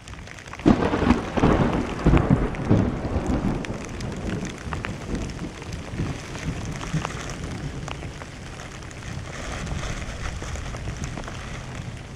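A roll of thunder about a second in, loudest for the first few seconds and then fading, over steady rain with small drops ticking on the camera.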